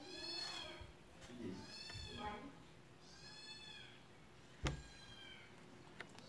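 A cat meowing faintly three times, about a second and a half apart, each call rising and then falling in pitch. A single sharp click follows about two-thirds of the way through.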